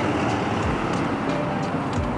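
Road traffic noise: a vehicle passing on the street, a steady rush of engine and tyre noise. Background music plays faintly underneath.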